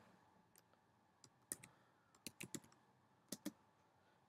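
Computer keyboard keys being typed: about eight faint, sharp key clicks in small, uneven groups, with near silence between them.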